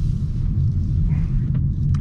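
Steady low road and tyre rumble inside the cabin of a Hyundai Kona Electric as it drives through a turn, with no engine note.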